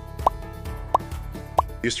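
Three quick rising "bloop" pops, evenly spaced about two-thirds of a second apart, over soft background music.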